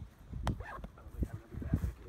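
Wind buffeting the microphone in uneven gusts, with a sharp click about half a second in and a few short pitched sounds.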